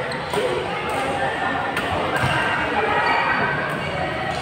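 Badminton rackets striking a shuttlecock in a rally: three sharp hits about a second and a half apart, over the chatter and echo of a large sports hall.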